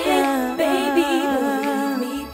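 Female voices singing layered, sustained vocal harmonies with vibrato over sparse backing; the bass drops out about halfway in, leaving the voices nearly a cappella.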